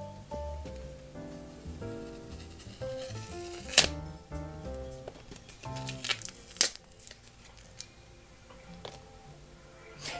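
Background music, a light melodic tune that grows quieter in the second half. It is joined by two sharp clicks of trading cards being handled, about four seconds in and again near seven seconds.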